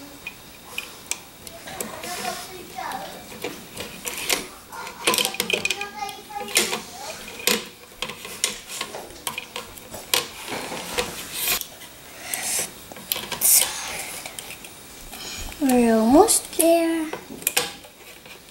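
Small plastic clicks, taps and rattles of a rubber-band loom and its hook as rubber bands are pulled and looped off the pegs. A child's brief wordless voice sound rises in pitch near the end and is the loudest moment.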